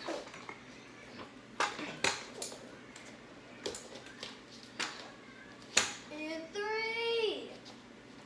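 Sharp knocks and clicks of a child's kick scooter on a wood floor, half a dozen scattered through, the loudest about six seconds in. Near the end a child's voice makes a long call that slides down in pitch.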